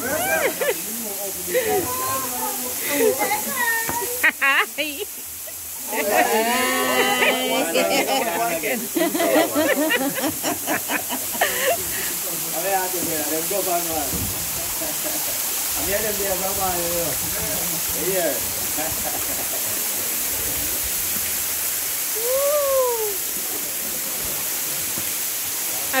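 Steady rush of a waterfall cascading into a river gorge, heard under people talking and laughing close by.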